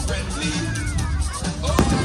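Music with a steady deep bass and people's voices, then fireworks bursts begin cracking and popping near the end.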